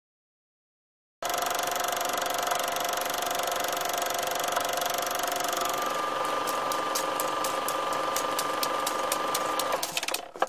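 Film projector sound effect: a steady mechanical whirr that starts about a second in, with a rapid, even clatter of clicks coming through more plainly in the second half, then cutting off just before the end.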